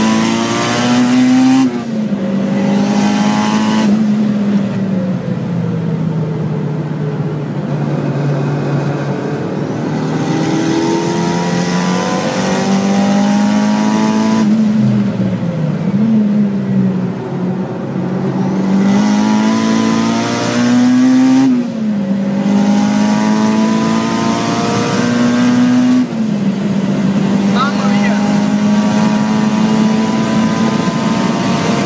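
Honda Civic Type R's naturally aspirated four-cylinder VTEC engine heard from inside the cabin, working hard on a track lap. The engine note climbs under full throttle and drops sharply at each upshift, about two, four, twenty-two and twenty-six seconds in. Around the middle it falls away under braking and cornering before pulling up to high speed.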